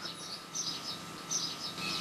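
Small birds chirping: short, high calls repeating every half second or so over a faint outdoor background.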